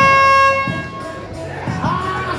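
Air horn over the arena PA, one long steady blast that cuts off about half a second in, marking the end of the rumble's entry countdown; quieter entrance music follows.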